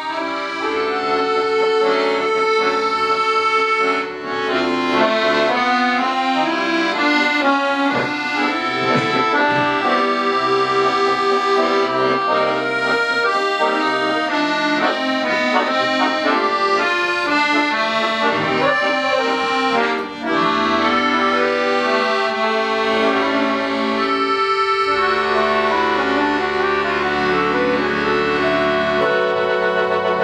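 Accordion ensemble of five players performing a bossa nova together, with held chords under a moving melody line.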